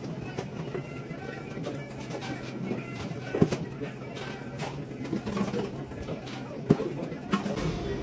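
Coffee-shop room sound: quiet background music and indistinct voices over a steady low hum, with scattered small clicks. Two sharp knocks stand out, one about three and a half seconds in and one near seven seconds.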